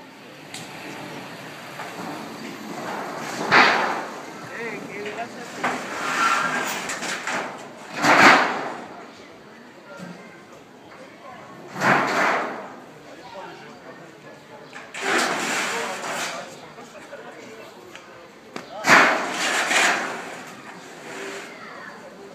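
Large rusty sheet-metal panels being handled and dropped onto a stack, giving about five loud crashing slams a few seconds apart, with men's voices around them.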